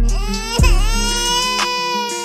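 One long wailing cry that rises at first, wavers, then holds steady, over background music with deep bass notes.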